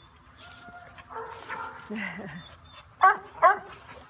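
A dog barking twice, two short, sharp barks about half a second apart near the end.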